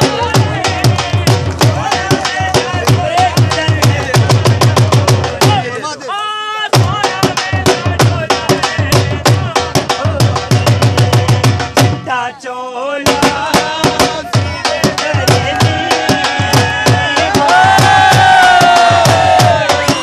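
Dhol drum played in a fast, driving rhythm, with a melody over the beat. The drumming breaks off twice for about a second, leaving only a wavering high melody line.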